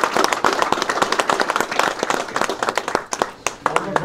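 Audience clapping hands in applause, dense at first and thinning to scattered claps near the end.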